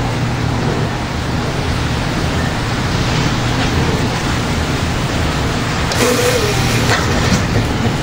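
A loud, steady hiss of heavy thunderstorm rain, with a low hum underneath.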